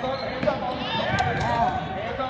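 Basketball bouncing on a hardwood gym floor during play, with a few sharp knocks, amid shouting voices from players and spectators.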